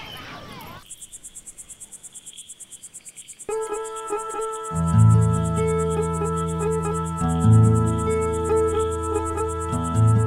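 Crickets chirring in a fast, even pulse, joined about three and a half seconds in by a film score of held notes, with a deep sustained note swelling in from about five seconds.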